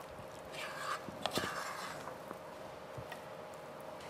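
A black spatula stirring and scraping a thick mixture of sev and mawa in a non-stick pan. It gives faint, uneven scrapes, with a few soft knocks about a second in.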